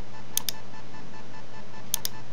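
Two computer mouse clicks, each a quick double tick of press and release: one about half a second in and one near the end. They sit over a steady low electrical hum.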